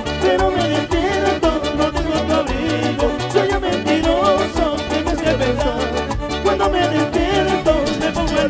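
A live Latin dance band plays at a steady dance beat, with an electric bass line, quick regular hi-hat ticks and a wavering melody line over the top.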